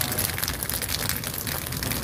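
Burning dry wheat stubble crackling, a dense patter of small snaps over a low rumble.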